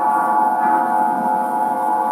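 Aeolian harp strings sounding in the wind: many sustained tones ringing together as one shimmering chord, swelling slightly about half a second in. The strings are tuned to A=432 Hz.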